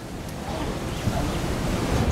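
Outdoor ambience fading in: wind buffeting the microphone with a low rumble, growing louder, with faint snatches of voices.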